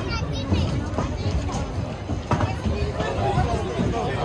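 Outdoor crowd chatter: many people's voices overlapping at once, none standing out, with an occasional sharp click.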